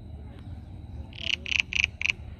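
An animal call: four short, high-pitched calls in quick succession, starting about a second in.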